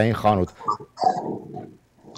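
A man's speech trailing off in the first half second, then brief low, wordless vocal sounds before a short dropout near the end.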